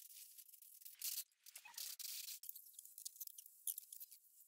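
Faint scraping and rattling of hand tools and parts being handled, with a few small clicks near the end, all close to silence.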